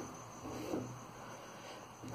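Quiet background room tone with one faint, short sound just over half a second in.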